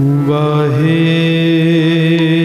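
Sikh kirtan singing: a voice holds one long note, slides up to a higher note about three-quarters of a second in and holds it with a slight waver.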